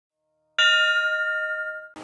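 A single bell-like chime, struck once about half a second in and left ringing as it fades, as the opening sting under the channel logo. It is cut off just before singing with violin begins.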